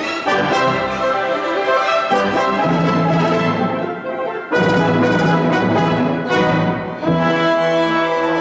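Orchestra playing, with brass to the fore. The sound changes abruptly about four and a half seconds in and again at about seven seconds.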